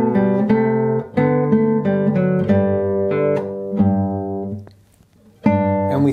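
Nylon-string classical guitar playing the closing bars of a minuet's first section, the notes ringing and dying away about 4.5 s in. After a pause of about a second it starts again from the beginning; the pause breaks the pulse, a hesitation that puts the playing out of time.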